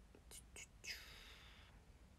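Faint sounds of a person's mouth: a few soft lip or tongue clicks, then a breathy whisper or exhale lasting just under a second.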